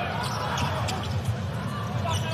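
Basketball being bounced on a hardwood court during live play, a few short knocks over the steady noise of an arena crowd.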